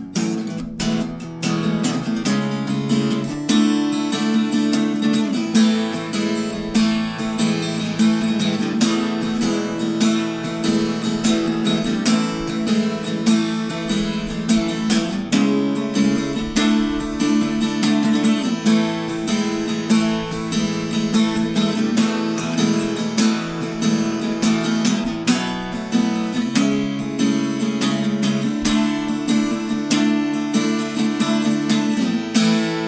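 Luna Fauna Hummingbird parlor-size acoustic guitar with a quilted maple top, played acoustically without its preamp: continuous strummed chords mixed with picked notes.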